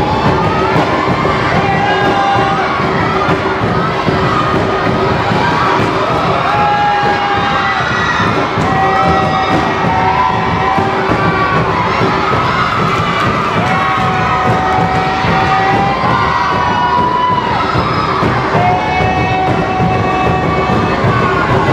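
Crowd cheering and shouting, with drawn-out cries every couple of seconds, over a troupe beating large double-headed tambua drums.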